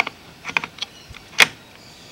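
Hard plastic clicks and knocks from a six-AA battery holder being handled and set back into a metal detector's plastic battery compartment: a few light clicks, then a sharper one about one and a half seconds in.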